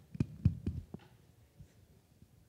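Handling noise from a handheld microphone: a quick run of dull thumps and clicks, about four a second, in the first second.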